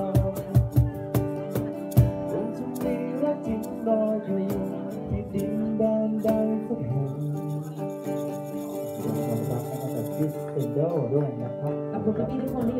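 Live acoustic band music: an acoustic guitar strummed to a steady beat with a male voice singing over it. Near the end a second voice comes in.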